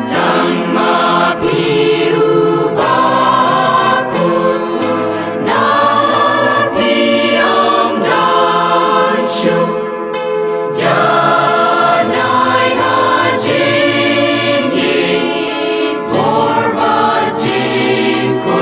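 Music: a choir singing slow phrases of long, held notes.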